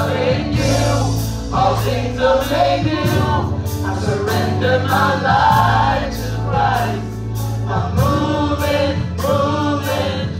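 Live gospel praise-team singing through the church sound system, a woman leading on a microphone with other voices joining. Instrumental backing keeps a steady beat of about two strokes a second under sustained low notes.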